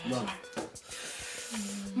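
A few murmured vocal sounds, then a hiss of breath through the lips a little past the middle, and a short hummed 'mm' near the end. The breathing and humming come from someone whose mouth is burning from raw habanero pepper.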